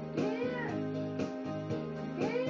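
A boy's voice singing a hymn to his own electronic keyboard accompaniment: one sung note swells and bends about a fifth of a second in, over sustained chords and repeated key strikes.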